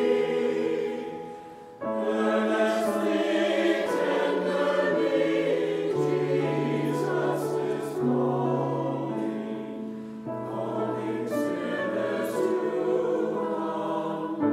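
Mixed choir of men's and women's voices singing held chords. The sound fades out briefly about a second and a half in, then the next phrase comes in together.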